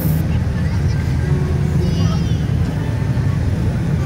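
Busy street: many people's voices over a steady low rumble of vehicle engines.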